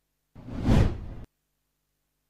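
A whoosh transition sound effect, about a second long, swelling to a peak and then cutting off suddenly.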